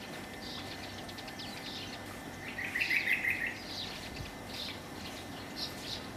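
Small birds chirping in short high calls, with a louder quick run of about six notes in the middle over a faint steady background hiss.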